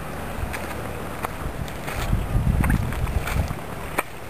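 Wind noise buffeting the camera's microphone, swelling in a stronger gust about halfway through, with a few light clicks.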